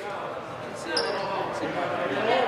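Players' voices calling out and echoing in a school gymnasium, with a short high squeak about a second in.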